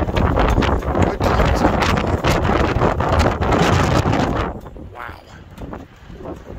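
Wind buffeting the phone's microphone in a loud rumbling rush that eases off sharply about four and a half seconds in.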